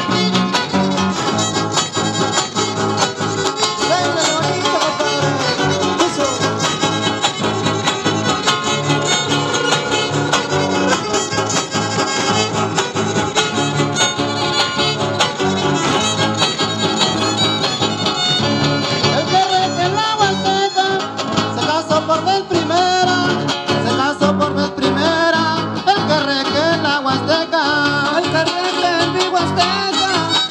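Son huasteco played live by a trío huasteco in an instrumental passage: a violin carries an ornamented melody over the steady strummed rhythm of the jarana and huapanguera. The violin line comes forward in the second half.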